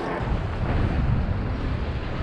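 Wind rumbling steadily on the microphone of a camera riding on a moving bicycle, over road noise.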